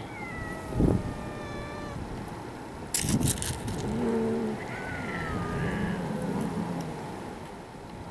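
Cats meowing: one long meow falling in pitch at the start, then more meowing in the middle. A low thump about a second in and a short burst of clicking rattles around three seconds.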